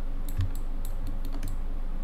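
Computer keyboard keys tapped: several short, irregularly spaced clicks over a steady low hum.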